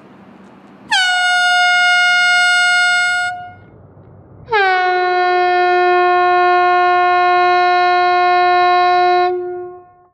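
Handheld compressed-air horn sounded twice while held still: a blast of about two seconds, then a longer one of about five seconds. Each dips briefly in pitch at the start, then holds one steady, piercing pitch, with no Doppler shift because the horn is not moving.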